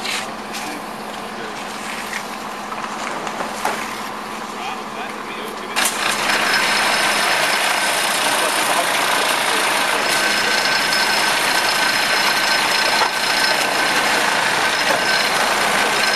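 Mooser MSB truss vibrating screed with its electric vibrator motors running steadily on wet concrete, a constant hum. About six seconds in it turns suddenly much louder and brighter, a steady mechanical whine with high tones over dense noise.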